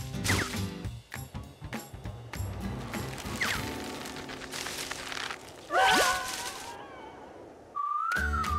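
Cartoon comedy score with a bouncing bass line, broken by slapstick sound effects: sharp whacks and short falling whistle-like glides. About six seconds in comes a loud crash, followed by a rising, wavering whistle tone that fades away.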